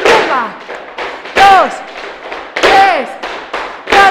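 Flamenco shoes stamping on a wooden floor in a zapateado: heavy stamps in an even rhythm, about one every 1.3 seconds, each landing together with a called-out count.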